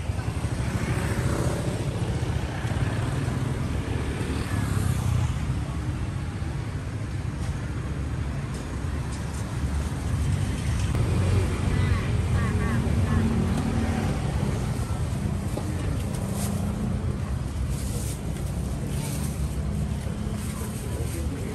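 Street traffic of cars and motorcycles going by, a continuous low engine noise, with people's voices in the background.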